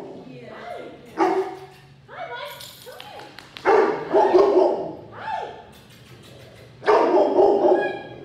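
A large lab–pit bull–mastiff mix dog barking in three loud bouts, around one, four and seven seconds in. The barking is the dog's nervous, fearful reaction to a new person.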